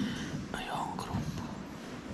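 A man's voice, speaking quietly in a whisper.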